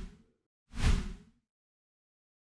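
Two whoosh sound effects from an animated end card, each with a low thud underneath. The first fades out right at the start, and the second comes a little under a second in and lasts about half a second.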